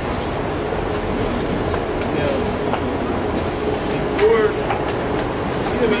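Busy city street noise: a steady traffic rumble with a constant hum, and bits of passers-by talking.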